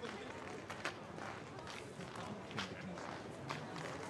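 Low murmur of voices with scattered light clicks and taps.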